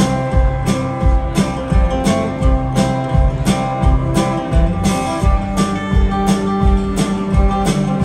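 A live rock band plays an instrumental intro: strummed acoustic guitar, electric bass, fiddle, and drums keeping a steady beat.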